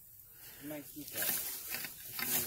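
Leafy weeds rustling and swishing as a rake is pushed through them, starting about a second in.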